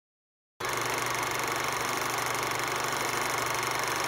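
A steady mechanical running noise, like a small machine whirring, starts suddenly about half a second in and holds at an even level.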